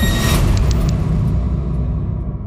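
A dramatic title-card sound-effect hit: a sudden burst that starts all at once, then a deep rumble that holds while its brighter part dies away.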